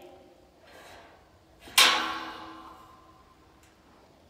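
Steel tube corral gate clanging shut against its metal post about two seconds in, one sharp clang with a metallic ring that fades over about a second and a half. A softer swishing scrape comes just before it.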